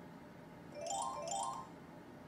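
Slot machine's win jingle: the game music drops out, and about a second in two quick rising chime runs sound, one after the other. They mark an 800-point win being added to the win counter.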